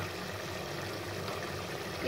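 Tomato-and-spice masala bubbling and sizzling in oil in an aluminium pot, a steady, even frying sound.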